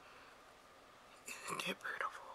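Faint room tone, then a woman's brief whispered words about a second and a half in.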